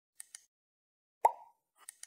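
Sound effects of an animated subscribe button: two quick mouse clicks, then a single louder pop about a second in, then two more clicks near the end as the bell icon is clicked.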